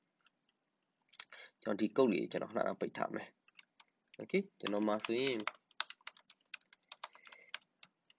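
Typing on a computer keyboard: a short run of quick keystrokes about a second in, then a longer, faster run in the second half.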